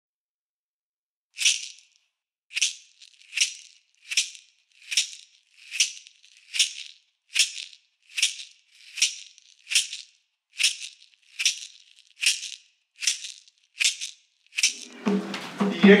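A hand shaker struck in a slow, steady beat, one short shake about every 0.8 seconds, starting after about a second and a half of silence. Near the end a drum and a voice come in.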